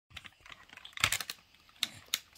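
Hard plastic clicks and clacks from a blue transforming robot toy as its parts are handled and folded, with a quick run of clicks about a second in and one more sharp click near the end.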